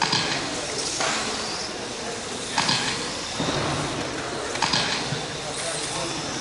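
Electric 1/12-scale on-road RC race cars running laps, a continuous whirring hiss of motors and tyres with sharp surges every second or so as cars pass and accelerate.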